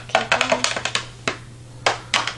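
Hard plastic toy figures clicking and tapping against a plastic playset as they are handled: a quick run of clicks in the first second, then a single click and a louder knock near the end.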